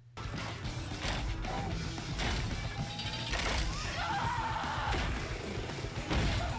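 Animated series soundtrack playing at low level: dramatic score with fight sound effects, a few sharp hits and crashes over a low rumble.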